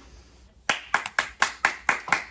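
Hands clapping in a steady rhythm, about four claps a second, starting a little over half a second in.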